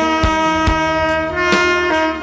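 Tenor saxophone playing a held melody note over accompaniment with a steady beat; the note steps to a new pitch about one and a half seconds in.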